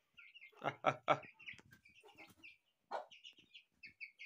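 Chicks peeping in a run of short, high chirps, with a hen's single lower cluck about three seconds in. A man's laughter trails off in the first second.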